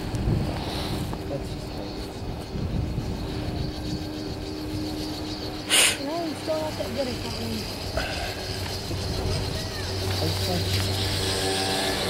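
Ride on the Falcon SuperChair chairlift: a steady hum with a low rumble, and one short, sharp clatter just before six seconds in as the chair passes over a lift tower's sheaves.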